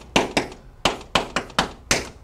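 Chalk writing on a chalkboard: a quick run of about seven short, sharp taps and scratches as an equation is chalked up.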